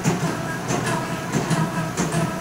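Automatic batasa-making machine running: a steady mechanical hum with a repeated clacking, about two or three clacks a second.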